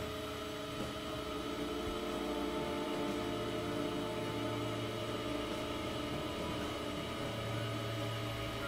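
Dense layered electronic drone: many sustained tones held together over a hissy haze, with a low hum that swells a few seconds in.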